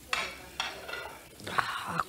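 Noisy sips of a drink slurped from a mug, twice about half a second apart, with a breathy sound near the end.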